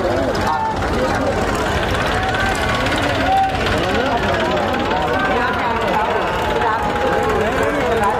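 Many people's voices talking and calling out over one another, as in a crowd, over a steady low rumble of vehicle engines such as the tractor pulling a procession float.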